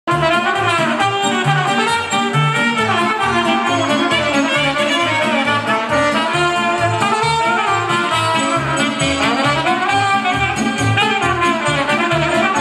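Brass-led band music with a steady, bouncing bass beat under a moving horn melody.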